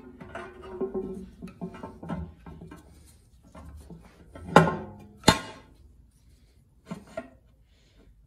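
Two sharp metallic clanks about halfway through, then a couple of lighter knocks near the end, as a cast-aluminum oil pan is set down onto an LS engine block for a test fit. Quiet background music plays in the first few seconds.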